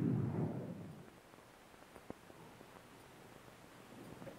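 The rumbling, echoing tail of a Claymore mine blast dying away over about a second, then faint background with one small click about two seconds in.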